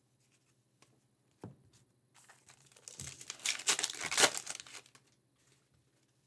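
A soft knock about a second and a half in, then about three seconds of crinkling and tearing, loudest near the middle, as a foil wrapper on a pack of trading cards is ripped open.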